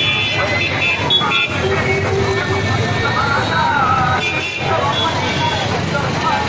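Street crowd voices over a steady traffic rumble, with short high horn toots near the start and again a little after four seconds in.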